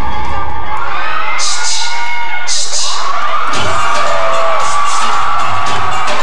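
Bhangra dance music playing loud with an audience cheering and shouting over it. The bass drops out for about two seconds partway through, then the beat comes back in.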